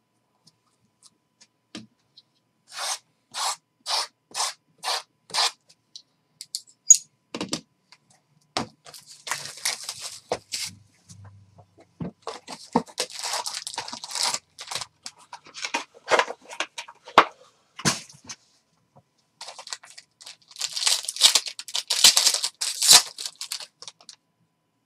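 Hands opening a trading-card hobby box: six short scraping strokes about two a second, then cardboard scraping and sharp knocks as the box is worked open. Near the end comes a dense crinkly tearing as the foil card packs are torn open.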